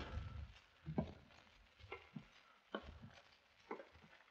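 Faint, slow footsteps creeping down a staircase, a soft, separate step roughly once a second: a radio-drama sound effect of someone sneaking down the stairs as quietly as he can.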